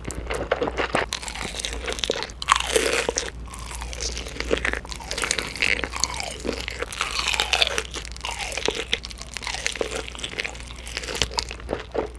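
Close-miked eating sounds: spicy stir-fried fire noodles slurped, then loud, crisp crunches and chewing as bites are taken from sticky smoky-barbecue-glazed fried chicken.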